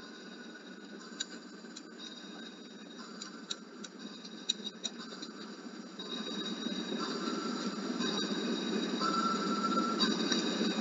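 Steady low hum and hiss of recording background noise, getting louder in the second half, with a thin steady whine and a few faint clicks in the first half.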